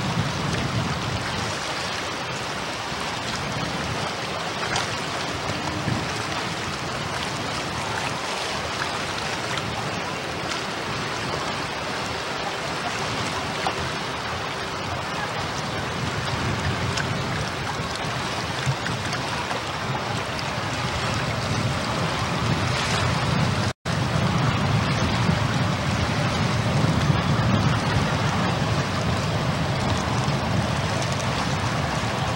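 Steady rushing noise of wind on a Video 8 camcorder's microphone and water washing along a passing Great Lakes freighter's hull. It drops out for a split second about three-quarters of the way through, and a low rumble is stronger after that.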